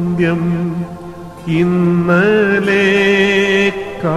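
A man chanting an Orthodox liturgical recitative, holding mostly one note with small steps up and down. The chant breaks off briefly about a second in, then picks up again.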